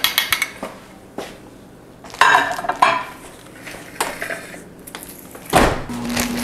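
A metal spoon clinking and scraping against a glass dish of melted chocolate, in a run of separate clatters, with a louder knock a little before the end.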